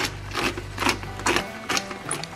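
Black pepper being ground from a pepper mill over the pan: about five short grinding strokes at roughly two a second.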